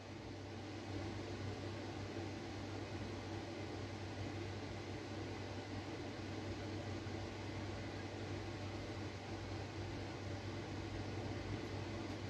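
Steady room tone: a constant low hum with an even hiss underneath and no distinct sounds standing out.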